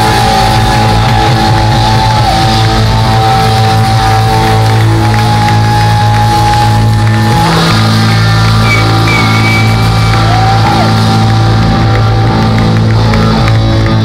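Live rock band playing loud with electric guitars and drums, the guitars holding long sustained notes with a few bends.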